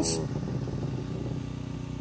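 A steady low mechanical hum in the pause between phrases, with a word's tail fading out right at the start.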